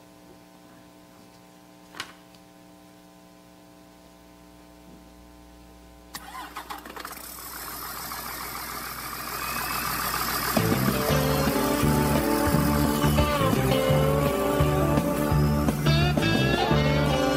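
A CD played over a church sound system. A low steady hum and a single click about two seconds in are followed, from about six seconds, by a recorded vehicle engine starting and running, building in level. A band with bass and guitar, the intro of a trucker song, comes in at about ten seconds.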